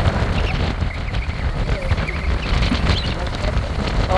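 Steady low rumble of an open safari vehicle driving on a dirt track, with wind buffeting the microphone.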